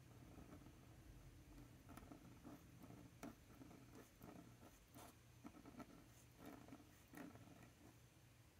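Faint scratching of a fine pen on a paper swatch card as a word is hand-lettered in cursive, in short irregular strokes.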